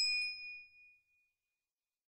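Notification-bell 'ding' sound effect from a subscribe-button animation: a single bright chime that rings and fades out within about a second.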